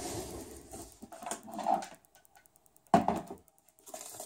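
Rummaging and handling noises off camera, then a sharp knock just before three seconds in that dies away quickly, as a second power bank is searched for and picked up.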